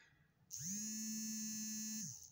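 A small electric motor buzzing steadily for about a second and a half, its pitch rising quickly as it starts and sliding down as it stops.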